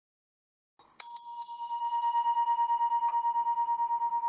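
A meditation bell struck once about a second in, then ringing on in one long, slowly pulsing tone, the signal that ends the silent meditation.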